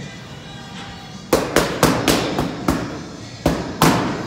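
Boxing gloves smacking into focus mitts: a fast combination of about six sharp punches starting a second in, then two more near the end.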